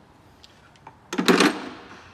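A short, loud clatter of metal engine parts being handled, about a second in, fading within half a second over quiet workshop room tone.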